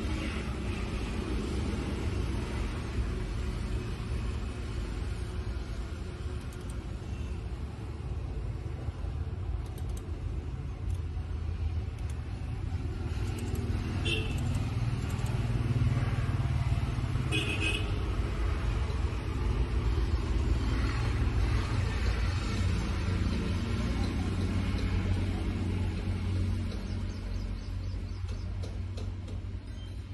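A steady low rumble of background noise with faint, indistinct voices. Two short high beeps come about halfway through, a few seconds apart.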